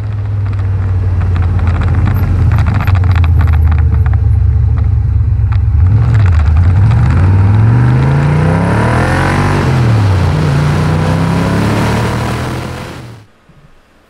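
Porsche 914's swapped-in LS6 V8 heard from outside the moving car: running under steady load, then revving up, dropping sharply at a gear change about ten seconds in, running steadily again and fading out near the end.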